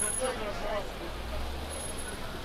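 Street ambience: people's voices chattering nearby mixed with the low engine rumble of a car moving slowly along the street, which grows stronger about a second in.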